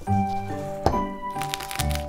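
Background music, with a sharp crack about a second in and then a run of fine crackling as a hard-boiled egg's shell is cracked and rolled under the hand on a wooden board.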